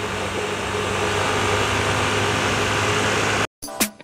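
Bajaj Pulsar motorcycle engine running steadily at highway cruising speed, with wind and road noise. The sound cuts off abruptly about three and a half seconds in, and music begins near the end.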